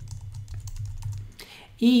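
Typing on a computer keyboard: a quick run of light keystrokes that stops about a second and a half in.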